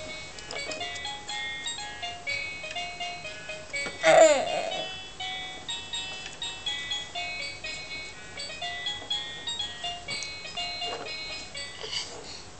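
Baby activity toy playing an electronic tune of short, high, beeping notes, after its buttons are pressed. About four seconds in, a brief, loud sliding squeal rises over the tune.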